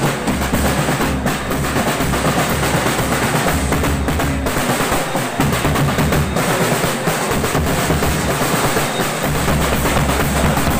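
Marching drum band playing a fast, dense pattern on snare and bass drums. The deep bass drum drops out twice in the second half while the snares keep going.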